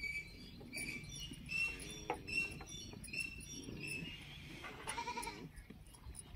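A goat bleats once, about five seconds in. Short, high chirps repeat throughout.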